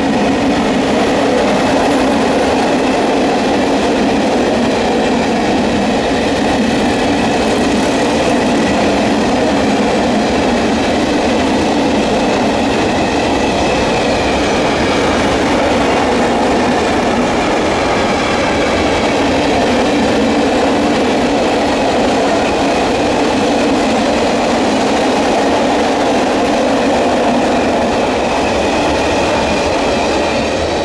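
Long freight train of covered hopper wagons rolling past close by: a steady, loud wheel-on-rail rumble with faint wavering high-pitched wheel tones. It begins to fade right at the end as the last wagon passes.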